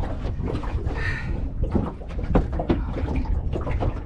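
Scattered knocks and thuds as a freshly caught snapper is handled in a small fishing boat, over a steady low rumble. A short higher pitched sound comes about a second in.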